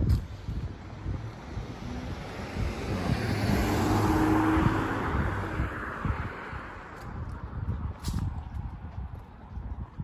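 A car driving past on the street, its tyre and engine noise swelling to a peak about four seconds in and then fading away.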